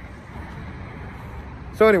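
Steady city street background noise with traffic, an even low rumble with no distinct events.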